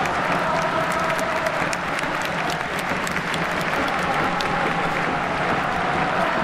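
Large stadium crowd applauding: a dense patter of hand claps over steady crowd noise.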